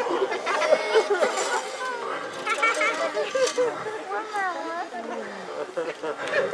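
Indistinct chatter of several voices, with no clear words.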